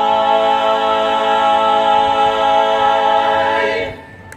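Four-voice barbershop quartet singing a cappella, holding one long chord in close harmony that cuts off just before the end: the final chord of the song.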